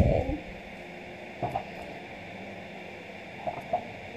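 Quiet room tone: a faint steady hum and hiss, with a few soft brief clicks about one and a half seconds in and near the end.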